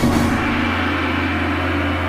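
A dramatic soundtrack hit: a sudden gong-like strike at the start, ringing on as a long, deep, sustained drone that fades only slowly.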